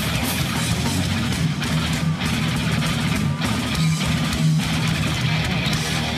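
A rock band playing loud and live, with distorted electric guitars over bass and a full, steady wall of sound.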